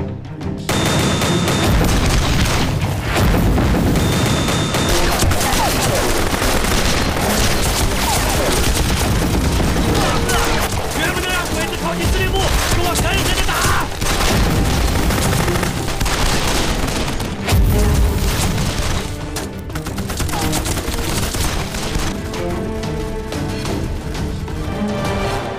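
Film battle sound: dense gunfire and booming mortar fire with explosions, breaking out about a second in and running on thickly, with one heavier blast later on, all under dramatic score music.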